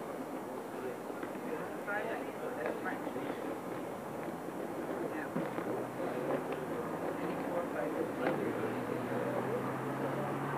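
Background chatter of several people's voices, with no words clear. About halfway through, a low steady hum comes in underneath it and carries on.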